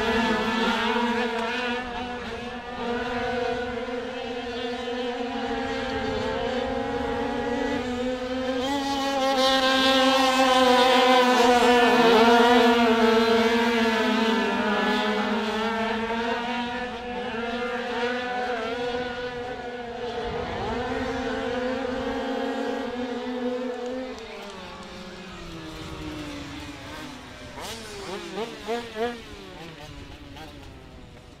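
A pack of 85cc two-stroke speedway bikes racing, their engines held at high revs with the pitch wavering as the riders work the throttle through the bends. The engines are loudest about ten to fourteen seconds in as the pack passes, fade after about twenty-four seconds, and near the end there are a few short blips of the throttle.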